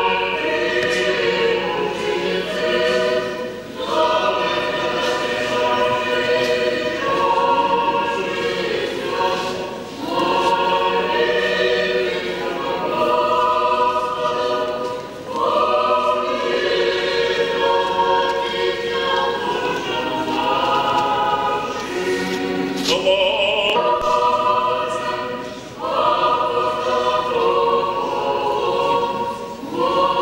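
Orthodox church choir singing unaccompanied in several parts, holding sustained chords in phrases a few seconds long with short pauses between them.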